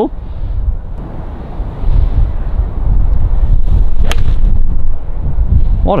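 Wind rumbling on the microphone, with one sharp click about four seconds in: a Wilson Staff FG Tour V6 forged iron striking a Bridgestone Tour B330 golf ball off the turf.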